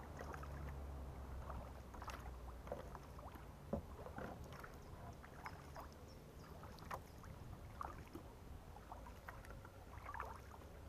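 Faint kayak paddling: water dripping and splashing off the paddle blades in many small splashes. A low hum runs under the first few seconds and fades after about four seconds.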